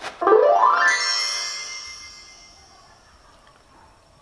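A short click, then a musical sound effect: one pitched tone glides upward over about a second and then rings on, fading away over the next two seconds.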